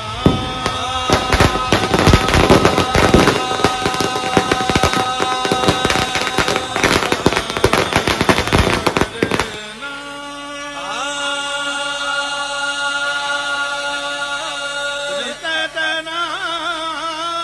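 A string of firecrackers bursting on the road in a rapid, unbroken run of cracks for about nine seconds, then stopping. Chanted devotional singing with music plays under it and carries on alone afterwards.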